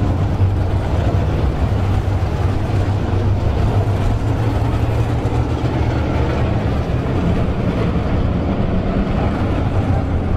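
A pack of dirt-track modified race cars' V8 engines running together in a steady drone as the field circles the track.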